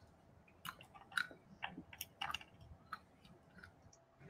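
A person chewing food close to the microphone: faint, irregular wet clicks and smacks, several a second, fading out about three seconds in.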